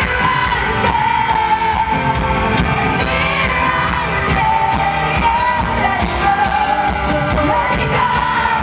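A woman singing a pop song live into a microphone with a full band, recorded from the audience in a large hall; her voice holds long, wavering notes over the band.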